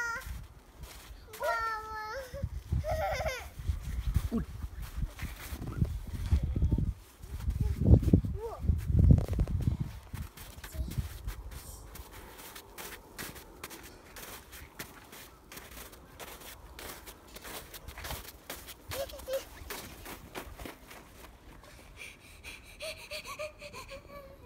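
A small child's high-pitched vocalizing without words, followed by a loud low rumble for several seconds and then soft crunching of small boots stepping in snow.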